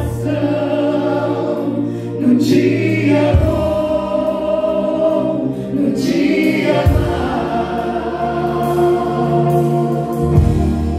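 A Portuguese-language gospel worship song sung live into handheld microphones over backing music. Sustained bass chords change about every three and a half seconds beneath the voices.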